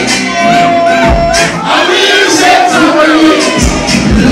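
Loud dancehall music playing at a party, with a crowd shouting and singing along over it.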